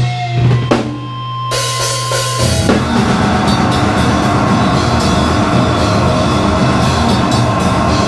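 Hardcore punk band playing live: a held low distorted note with a thin high whine over it, then about two and a half seconds in the drums and distorted guitar come in together, fast, dense and loud.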